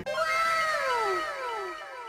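A comic falling-pitch sound effect, cat-like, repeating as an echo about twice a second and fading away.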